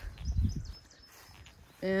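A brief low rumble on the microphone about half a second in, then quiet outdoor air with a few faint high peeps; talking resumes near the end.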